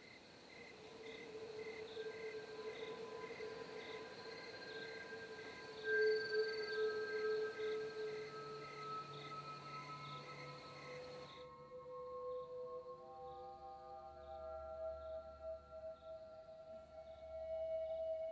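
Eerie ambient film score of sustained drone tones that shift slowly in pitch, with a faint high pulsing about twice a second. A soft hiss under it cuts off suddenly about eleven seconds in, and lower drones take over for the rest.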